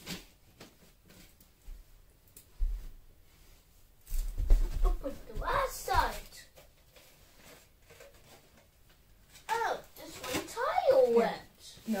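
Voices, mostly a child's, in two short stretches about halfway through and near the end, with a few low thumps in between.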